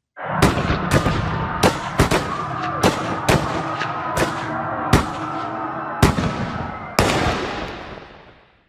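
Sound-effect gunfire: about a dozen sharp single shots at uneven intervals, over a sustained, droning music bed. It fades away near the end.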